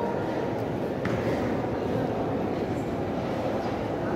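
Steady murmur of a crowd of people moving and talking, echoing in a large mosque hall, with no singing over it.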